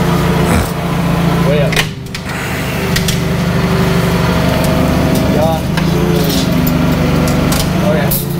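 Propane UniCarriers forklift's engine running steadily, a low drone with a brief drop in level about two seconds in.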